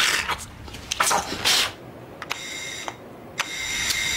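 An electric doorbell ringing: a high, steady ring sounds twice, once about two seconds in and again near the end. Before it there are two short breathy hisses.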